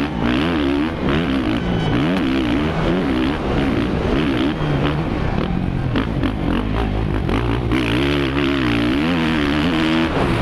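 Suzuki RM-Z450 four-stroke single-cylinder motocross engine heard from the rider's helmet, revving up and down with the throttle, its pitch rising and falling about every second. Wind rush on the helmet runs under it.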